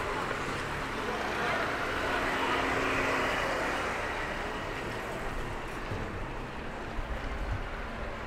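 City street ambience: road traffic going by, with one vehicle passing louder and fading about two to four seconds in.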